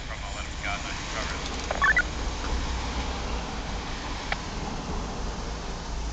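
Train radio received on a handheld scanner: faint speech fragments at the tail of a transmission, a brief pitched chirp about two seconds in, then a steady hiss with a low rumble.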